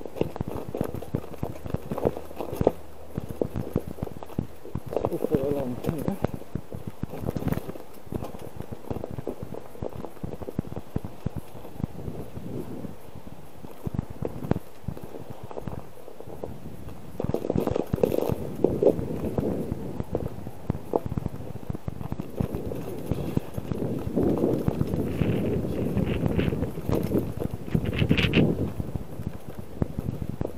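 Bicycle riding over rough, cracked sea ice: a constant rapid clatter of knocks and rattles as the tyres bump across the uneven ice, louder in stretches.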